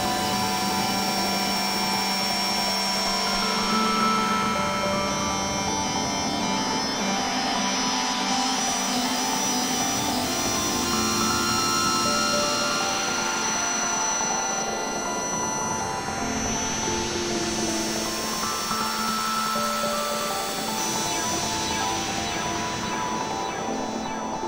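Berlin-school electronic music played on synthesizers: a sequenced pattern of short notes over a steady low drone, with slow swells of hiss sweeping up and down in pitch.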